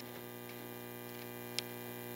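Steady electrical mains hum in a quiet room, with one short faint click about one and a half seconds in.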